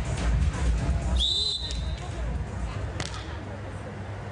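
Referee's whistle blown once, a steady high tone about a second in lasting under a second, the beach volleyball signal for the server to serve, over stadium music that fades out. A single sharp smack follows about three seconds in.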